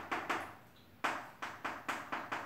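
Chalk tapping and scraping on a blackboard as it writes, heard as a run of short sharp taps with a brief pause partway through.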